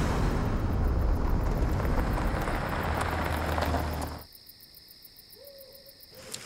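An SUV driving along a dirt road: engine and tyres on the loose surface, a steady noise heavy in the low end. It cuts off abruptly about four seconds in, leaving quiet.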